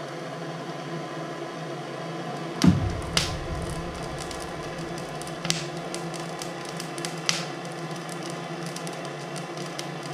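A handheld propane torch runs with a steady hiss into the wood stove's firebox as it lights the kindling. There is a loud low thump a little over two and a half seconds in, then a few sharp snaps as the kindling catches.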